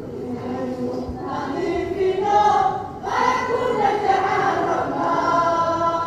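A group of voices singing together in long, held notes.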